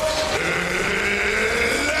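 A man's long drawn-out announcing call in an arena, a single vowel held and wavering over crowd noise.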